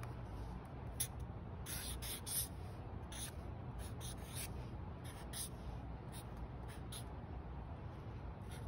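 Felt-tip marker drawing on paper: short, irregular scratchy strokes as an outline is drawn, over a low steady hum.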